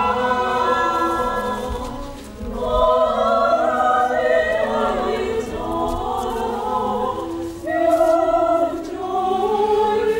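Opera chorus singing in full voice, the phrases dropping away briefly twice, about two seconds in and again near eight seconds, before the voices come back in.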